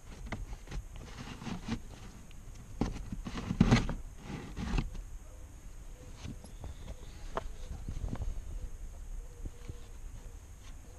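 Handling noises as a pleated cabin pollen filter is slid out of its plastic housing under the dashboard and set down: scrapes, rustles and light taps and clicks at irregular moments, the loudest about four seconds in.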